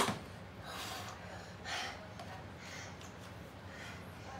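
A child gasping and breathing out hard in a few short breaths while straining through a hanging hold on a doorway pull-up bar. A single sharp knock comes at the very start.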